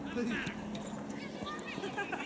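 Voices calling out across a youth football pitch in short, scattered shouts, with a couple of faint knocks.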